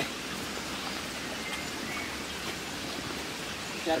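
Shallow stream flowing over stones: a steady, even rush of running water.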